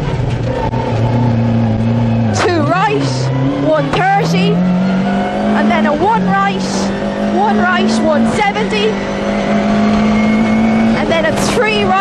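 A Vauxhall Nova rally car's engine, heard from inside the cabin. It runs at low revs through a tight hairpin, then climbs in pitch as the car accelerates away along a straight.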